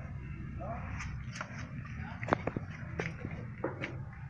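Irregular sharp clicks and taps from a Yorkshire terrier moving about on a concrete floor, over a low hum that fades about a second in.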